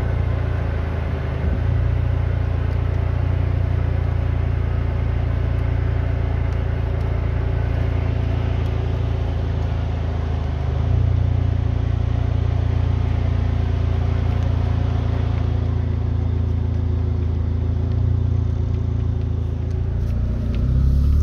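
A vehicle's engine running steadily, a constant low hum that gets slightly louder about halfway through.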